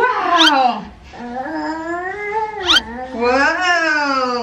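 Wordless singing: long sliding "uuuh" vocal notes that rise and fall, with two brief high squeaks, about half a second in and near three seconds.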